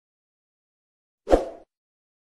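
A single short pop sound effect about a second and a quarter in, breaking out of total silence. It is the pop of a subscribe-button overlay animation appearing on screen.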